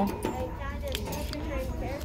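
Indoor store ambience: faint background voices with a steady faint tone, and a couple of light clicks as a small wooden box is handled on a wire shelf.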